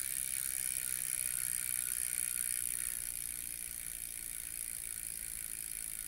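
Rear bicycle wheel spinning freely, its Shimano 11-speed freehub buzzing steadily as the pawls click too fast to tell apart, easing off slightly as the wheel coasts. The carbon hub runs on ceramic bearings and spins very freely and smoothly.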